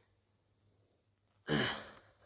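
A man's sigh: a quiet room for about a second and a half, then one sudden, loud breath out that fades away.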